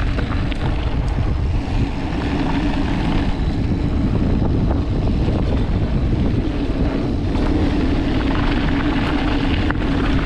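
Mountain bike rolling along a dirt and gravel fire road: steady wind rush on the camera microphone over the hum and crunch of the tyres, with scattered small rattles and clicks.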